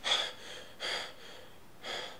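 A man breathing hard in gasps: three sharp breaths about a second apart, the first the loudest.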